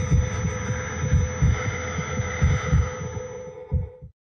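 Trailer sound design: low heartbeat-like thuds pulsing under a held droning tone, fading down and cutting off to silence at the end.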